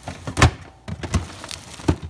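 Clear plastic refrigerator crisper drawer being slid shut and handled: three knocks of plastic, the loudest about half a second in.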